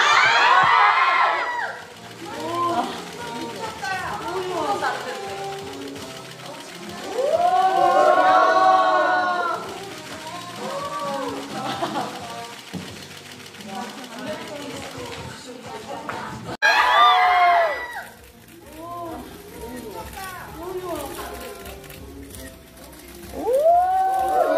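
Women's voices singing and talking in loud bursts near the start, about a third of the way in and again after a sudden cut about two-thirds through, over faint background music.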